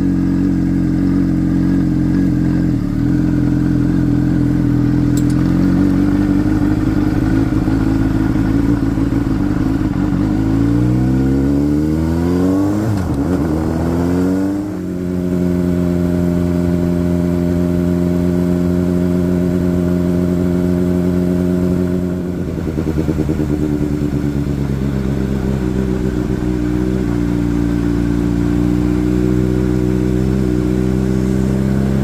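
Honda CBR sport bike engine running steadily, then rising in pitch as the bike pulls away. The note drops suddenly about halfway through at a gear change, runs steadily again, dips briefly in the last third and climbs slowly near the end.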